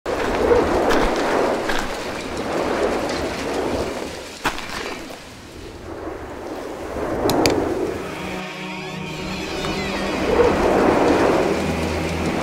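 Produced trailer sound design: repeated swelling rumbles and whooshes in the manner of a storm wind, with a few sharp clicks, and a low steady drone coming in about eight seconds in.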